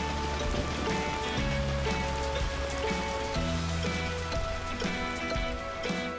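Steady rain falling, a continuous hiss of downpour, under background music with held notes and a bass line.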